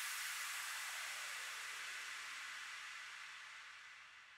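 Faint white-noise hiss fading out to silence: the tail of a noise effect left ringing after the dance track's last hit.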